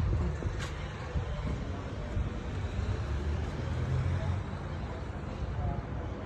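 Steady low rumble of urban background noise, with a short click just over half a second in and a slightly louder low hum for a second or so past the middle.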